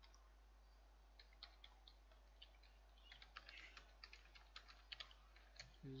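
Faint computer keyboard typing: irregular key clicks starting about a second in and coming thickest in the second half, as a word is typed out.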